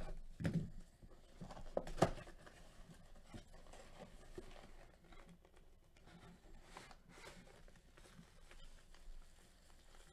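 Cardboard box being handled and opened by hands in plastic gloves: a few knocks and scrapes in the first two seconds, the sharpest about two seconds in, then faint rustling of the gloves and packaging.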